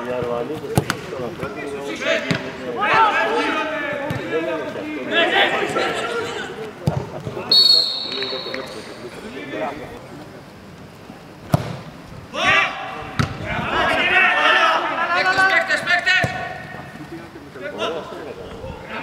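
Men's voices calling out across a training pitch, with a few sharp thuds of a football being kicked and a short high whistle about seven and a half seconds in.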